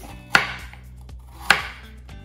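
Chef's knife chopping through a carrot onto a wooden cutting board: two sharp chops about a second apart.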